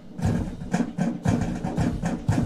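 Military march music with a steady drum beat, about four strokes a second.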